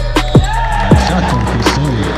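Background music track with a heavy, booming bass-drum beat and held synth tones.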